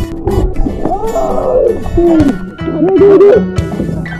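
People's voices exclaiming and gasping 'oh' in short rising-and-falling cries while swimming in the sea, over background music.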